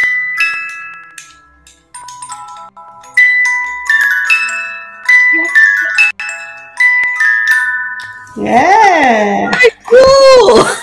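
Small music box's metal comb playing a melody: a run of bright, plucked, ringing notes, with a short pause about two seconds in. The tune stops a little before the end.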